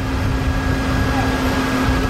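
Steady low engine rumble with a constant hum on an airport apron, typical of idling aircraft and vehicle engines.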